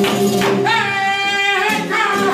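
Flamenco cante por seguiriyas: a singer holds one long, wavering note from just under a second in until near the end, over flamenco guitar and hand-clapping (palmas).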